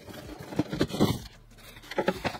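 A cardboard box being lifted off a PC case packed in polystyrene foam end caps: a few short scrapes and rustles of cardboard against foam in the first second or so, then quieter.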